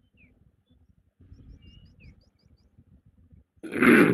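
Faint high chirps of small birds, a run of quick short falling notes, picked up through a video-call microphone over low background noise. Near the end comes a brief loud burst of noise.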